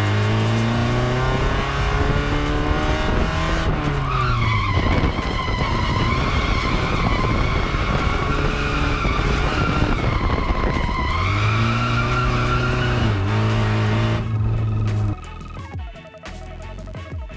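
Drift car's engine held at steady revs, then the note falls off about four seconds in while the tyres squeal steadily through the slide for several seconds: the car off throttle and slowed on the foot brake mid-drift. The engine then climbs back to steady revs before the sound cuts off near the end.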